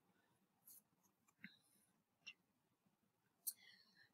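Near silence: room tone, with three faint brief ticks spread through it.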